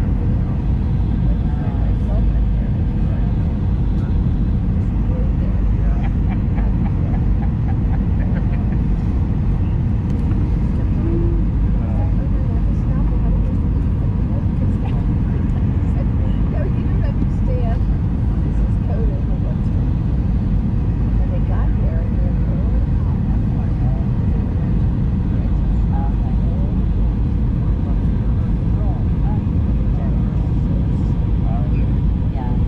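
Cabin noise of an Airbus A319 airliner descending: the steady, loud rumble of the jet engines and the air rushing past the fuselage, heard from a window seat over the wing, with a faint steady hum held above it.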